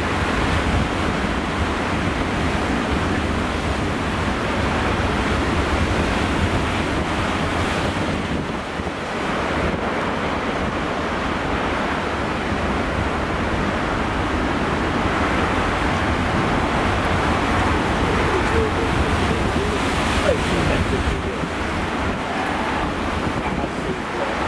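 Storm surf breaking and churning over rocks, a steady wash of noise, with strong wind buffeting the microphone.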